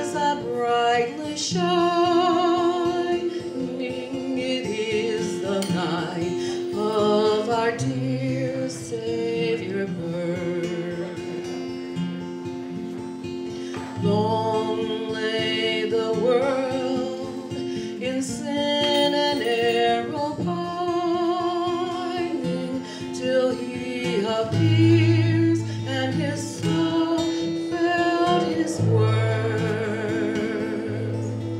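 A woman singing a song to acoustic guitar accompaniment.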